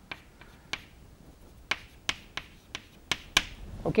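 Chalk clicking against a blackboard while writing: about ten short, sharp clicks at an irregular pace.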